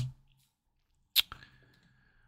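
A single sharp computer-mouse click about a second in, followed by a couple of fainter ticks, against an otherwise near-silent room.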